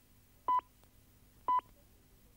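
Two short, even time pips from the British speaking clock, one second apart, about half a second and a second and a half in. The second of them is the third stroke, which marks the exact time just announced.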